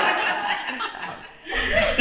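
An audience laughing, the laughter dying away over about a second and a half.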